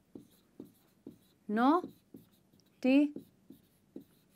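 Dry-erase marker writing on a whiteboard: a handful of short, soft scratchy strokes as a word is written out, broken by a woman's voice slowly sounding out two syllables, which are the loudest sounds.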